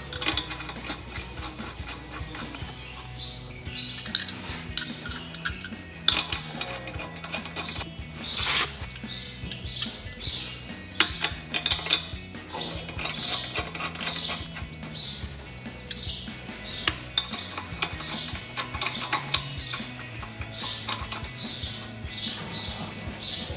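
Chrome acorn lug nuts clicking and clinking as they are spun finger-tight onto the wheel studs by hand, with short high squeaks repeating throughout and one louder click about eight seconds in.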